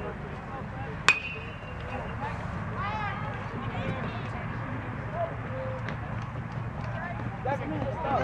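Metal baseball bat hitting a pitched ball about a second in: one sharp, loud ping that rings briefly.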